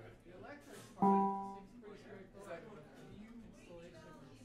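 A single plucked string note, guitar-like, struck sharply about a second in and dying away within about half a second, over low room chatter.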